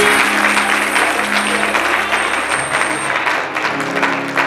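Congregation applauding over the end of a song, whose last held chord dies away about three-quarters of the way through, leaving the clapping on its own.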